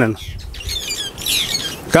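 Small birds chirping in the background: a run of quick, high, falling chirps through the middle of the pause, over a low outdoor hiss.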